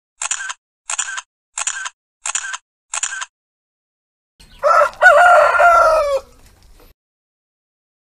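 Five quick camera-shutter clicks about two-thirds of a second apart, then a rooster crowing once, loud, for nearly two seconds.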